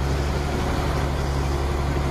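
Truck engine idling steadily, heard from inside the cab, a low even hum while the engine's air compressor builds brake air pressure.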